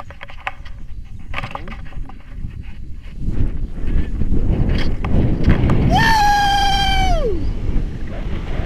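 Wind rushing over the camera microphone of a tandem paraglider, loud from about three seconds in as it takes off, with light clicks and knocks before that. About six seconds in a person lets out a long shout held on one pitch, which falls away near the end.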